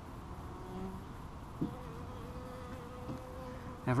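Honey bee buzzing in flight close to the microphone: a thin, steady hum that comes in with a small tick about a second and a half in and holds for about two seconds.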